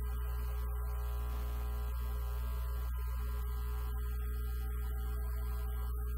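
A steady, unchanging drone of held low tones from the stage sound system, with no strikes or beat.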